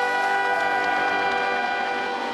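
Charanga brass band of trumpets, trombones, saxophone and sousaphone holding one long, steady chord.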